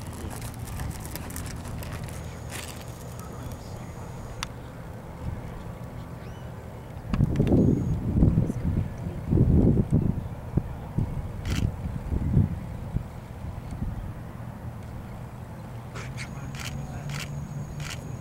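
Wind buffeting an outdoor microphone over a steady low rumble, with a run of strong gusts in the middle and a few faint clicks scattered through.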